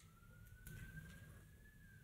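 Near-silent room tone with a faint siren wail: one thin tone rising slowly in pitch, then starting to fall near the end.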